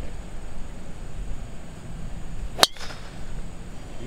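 Golf club striking the ball off the tee: a single sharp crack about two and a half seconds in, with a brief ring after it.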